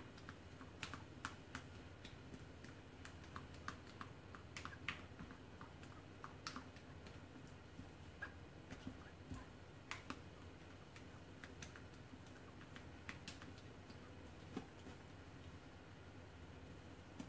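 Faint, irregular light clicks and taps of a silicone spatula against a stainless steel mixing bowl as a cream cheese batter is stirred.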